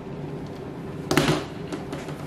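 Kitchen tongs knocking on a plastic chopping board as a cooked steak is set down, one sharp knock about a second in.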